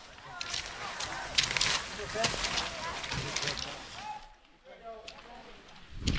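Irregular crunching and scraping on packed snow, loudest in the first half and dropping away about four seconds in, with faint voices calling in the distance.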